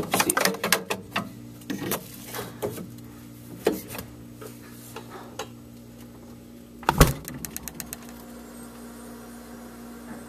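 Steady hum of a running freezer, with irregular clicks and knocks of handling close to the microphone; about seven seconds in comes a loud thump followed by a quick run of ticks, after which only the freezer's hum remains.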